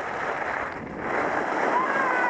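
Skis sliding and scraping over packed snow, with wind rushing over the head-mounted camera's microphone; the hiss grows louder about a second in.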